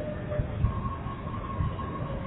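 Low, steady background rumble with a faint thin steady tone that comes in partway through.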